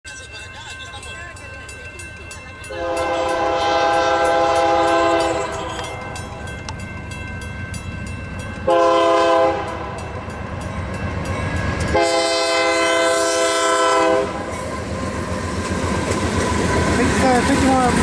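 Union Pacific diesel locomotive's air horn sounding a long, a short and a long blast for a grade crossing, over the rapid ticking of the crossing bell. The rumble of the locomotives grows near the end as they reach the crossing.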